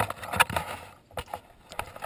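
Close handling noise: rustling with a quick series of sharp clicks and knocks from climbing hardware and the moving camera, loudest about half a second in.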